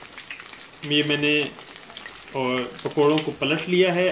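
Onion pakoras (onion bhajis) deep-frying in hot oil: a steady sizzle of bubbling oil. A man's voice speaks over it from about a second in.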